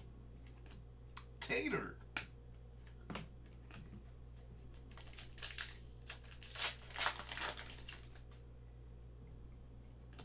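Foil wrapper of a 2020-21 Upper Deck Artifacts hockey card pack being torn open and crinkled by hand: a run of crackling, tearing bursts about halfway through. A brief vocal sound comes shortly before.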